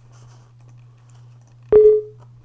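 A short electronic beep near the end: one clear tone that starts suddenly, lasts about a third of a second and fades out, over a steady low electrical hum.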